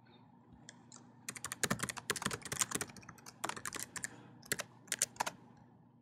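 Computer keyboard being typed on: a run of quick keystrokes starts about a second in, comes in short bursts, and stops shortly before the end.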